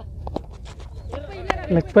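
Outdoor cricket ground sound: short shouts from players and onlookers, a couple of light clicks, and one sharp knock about one and a half seconds in, over a steady low rumble of wind on the microphone.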